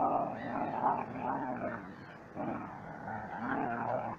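Dogs growling as they play-fight, an American Staffordshire terrier puppy and a mixed-breed dog, in two stretches with a short break about halfway through.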